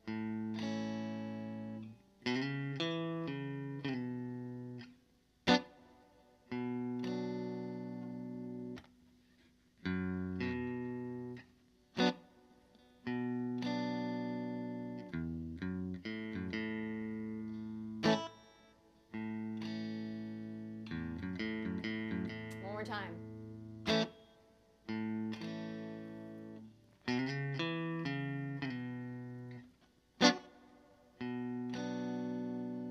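Fender Stratocaster electric guitar playing a slow waltz-time passage: chords left to ring and fade, linked by short single-note runs, with a hard strummed accent about every six seconds.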